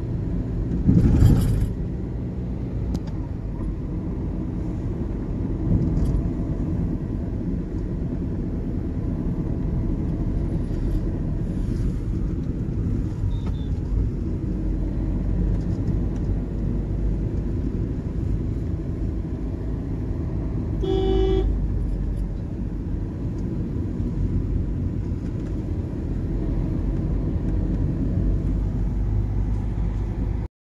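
Steady road and engine noise heard from inside a moving car's cabin, with a knock about a second in and a short horn toot about two-thirds of the way through.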